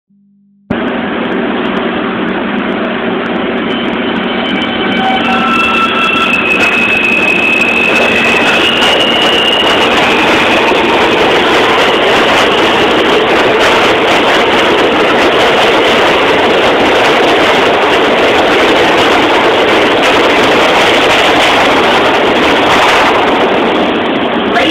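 R160 subway train accelerating out of an underground station: its electric propulsion whines in rising steps over the first ten seconds or so, under a loud rumble of wheels on rail that builds and then holds steady as the cars run past.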